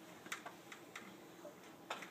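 A few faint, irregularly spaced clicks over quiet room tone, the clearest about a third of a second in and just before the end.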